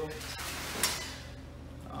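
Serrated bread knife sawing back and forth between a red drum's thick skin and the fillet, pressed hard down onto the cutting table, with one sharp scrape a little under a second in.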